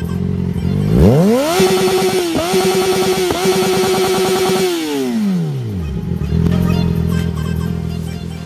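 Yamaha XJ6's inline-four engine free-revved: its pitch climbs quickly from idle, holds high and steady for about three seconds with two brief dips, then falls back to idle. Background music plays at the start and end.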